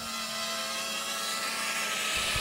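Droneframes DRQ250 mini quadcopter's four small brushless motors and 5-inch three-blade props whirring steadily with a whine as it flies low, growing slightly louder.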